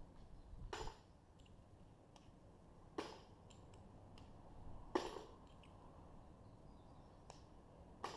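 Light metallic clicks and clinks of spent .45 ACP brass cases being worked loose by hand, with three sharper clicks about two seconds apart and a few fainter ticks between.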